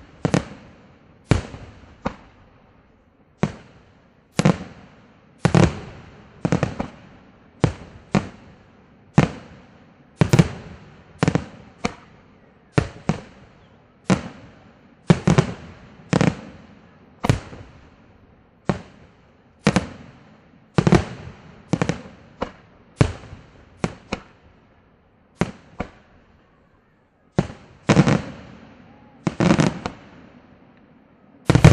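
Aerial firework shells bursting one after another, about one sharp bang a second, each trailing off in a short echo. There is a brief lull of about two seconds near the end.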